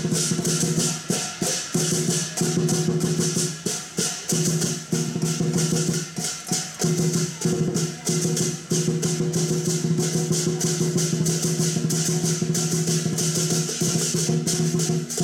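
Chinese martial-arts percussion: a drum struck in a fast, steady rhythm with crashing cymbals and a ringing gong, accompanying a broadsword form.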